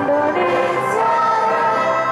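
Music with a group of voices singing, held notes stepping from one pitch to the next.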